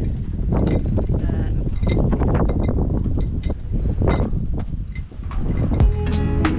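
Wind buffeting the microphone in gusts, with a woman's wordless voice over it.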